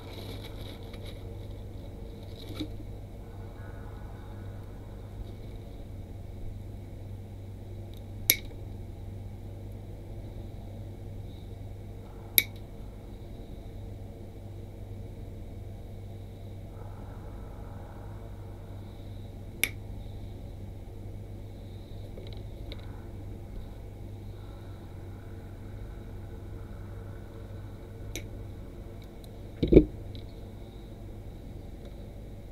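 Wire clippers snipping small wire nails: four sharp single snips several seconds apart, over a steady low hum. A louder knock comes near the end.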